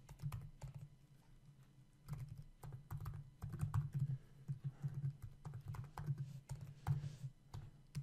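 Typing on a computer keyboard: a few scattered key clicks, then from about two seconds in a quick, irregular run of keystrokes.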